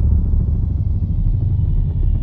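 Deep, steady rumble from a channel intro's soundtrack, loud and almost all bass.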